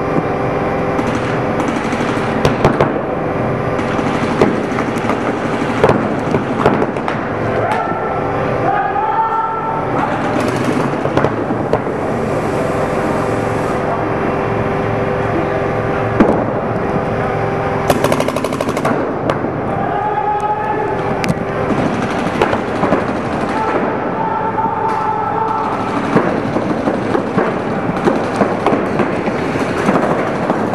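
Rapid, continuous popping of several paintball markers firing, with voices shouting at times over the shots.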